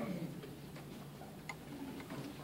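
Low murmur of voices in a meeting room, with a few faint, irregular clicks and knocks as a handheld microphone is passed from one person to the next.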